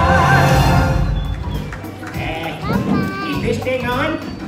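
Live stage-show music with a held, wavering sung note ends about a second in. An audience then claps and cheers, with voices that include a small child's.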